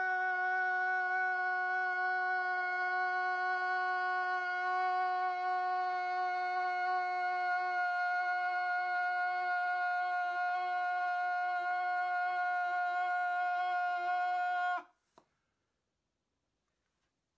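A man's voice holding one long, unbroken note at a steady pitch with a buzzy tone, cutting off abruptly about a second before the end.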